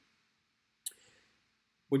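A single short, sharp click about a second in, followed by a brief faint tail. It comes as the lecture's digital whiteboard switches to a new page.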